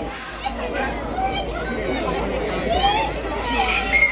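A crowd of people chattering on a station platform, many voices overlapping.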